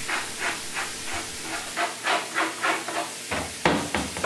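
Tap water running into a sink while algae is scraped off the mesh screen of an aquarium algae scrubber with a sharp edge, in quick, uneven strokes about three or four a second.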